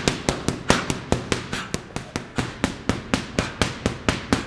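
Gloved punches landing on leather focus mitts: a fast, unbroken run of sharp slaps, about five a second.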